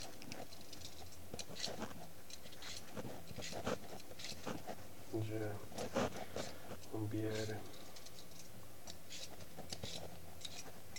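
Vegetable peeler blade scraping along a raw sweet potato's skin in repeated short, irregular strokes, each a brief rasp.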